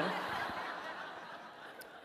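Audience laughing in a lecture hall, the laughter dying away over about two seconds.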